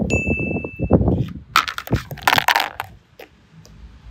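Crunching and rustling noises, with a short bright ding sounding at the start for under a second.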